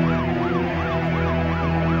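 Emergency-vehicle siren in a fast yelp, its pitch sweeping up and down about three times a second, over a music bed.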